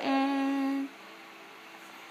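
A voice humming or singing one long steady note that stops just under a second in.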